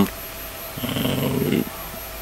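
A brief low, rough vocal noise from a man pausing mid-answer, a creaky hesitation sound lasting under a second near the middle.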